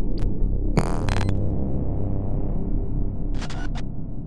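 Electronic logo-sting sound design: a low, steady droning hum broken by short bursts of glitchy static, one about a second in and another near the end.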